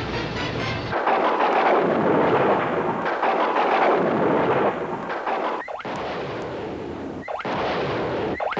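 Truck-mounted multiple rocket launcher firing a salvo: a rushing roar of rockets leaving the tubes starts about a second in and is loudest until nearly five seconds. It then carries on lower, broken by a few sudden short dropouts.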